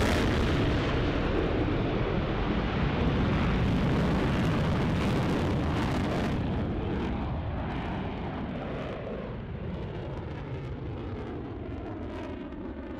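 Fighter jet flying past overhead: a loud, rough rush of jet engine noise that slowly fades as the aircraft moves away.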